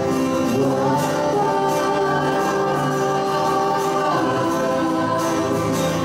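A small group of voices singing together in long held notes, accompanied by acoustic guitars, cello and violin.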